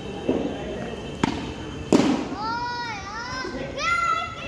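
Cricket ball bowled and struck with a cricket bat: a few sharp knocks, the loudest about two seconds in. A long, rising-and-falling shout from a player follows, and another call comes near the end.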